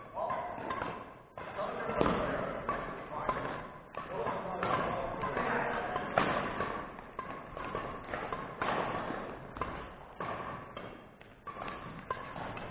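A badminton rally in a large, echoing gym: sharp knocks of racket strikes on the shuttlecock and footfalls on the wooden court floor, with indistinct voices of players.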